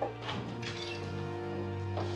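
Background score of sustained, held notes, likely strings.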